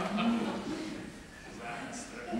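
A man's low voice, drawn out for about half a second at the start, then fading to quieter, indistinct sound.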